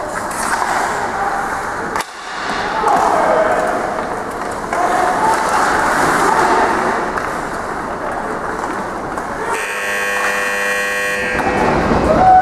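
Ice hockey game sounds: players' shouts over skates scraping on the ice, with a sharp click about two seconds in. Near the end a steady, horn-like tone with many overtones sounds for about two seconds.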